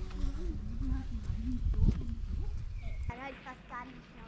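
A high-pitched voice making wordless sounds over low wind rumble on the microphone. The rumble cuts off abruptly about three seconds in, and a few quick, high rising-and-falling calls follow.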